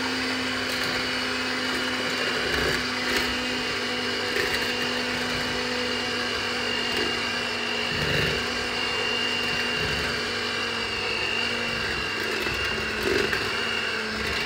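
Electric hand mixer running steadily at one speed, a constant motor whine, its beaters working flour into a sugar, oil and egg cake batter that thickens into a stiff dough.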